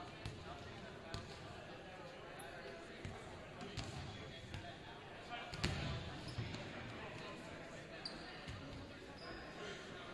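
Indistinct chatter echoing around a large gymnasium, with scattered sharp thuds and knocks; the loudest comes about five and a half seconds in.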